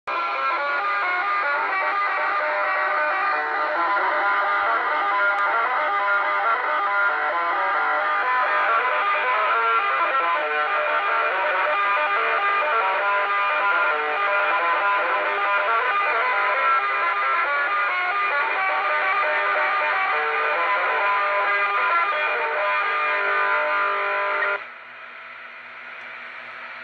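Electric guitar music with distortion, heard narrow and tinny through the speaker of a vintage tube CB radio base station as someone plays it over the channel. It cuts off suddenly near the end.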